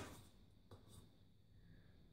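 Near silence: room tone, broken by a faint click right at the start and a weaker tick under a second later.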